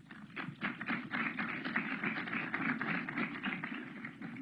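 Audience applauding: many hands clapping together, swelling over the first second and tapering off near the end.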